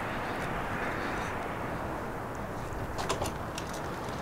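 Steady outdoor background noise of distant road traffic, with a few faint clicks about three seconds in.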